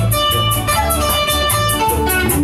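Latin dance music with a plucked guitar lead over a steady bass, and a bright high percussion beat about four strokes a second.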